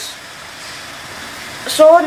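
Steady, even background hiss with no distinct knocks or clicks, and a short spoken word near the end.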